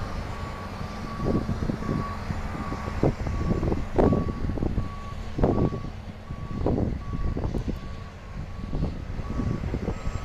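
Heavy earthmoving equipment's backup alarm beeping steadily, about two beeps a second, over the low running of diesel engines. Irregular bursts of noise break in now and then.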